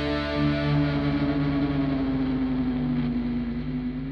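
Music: a distorted electric guitar holding a long sustained chord that slowly rings out, its upper tones gradually dying away.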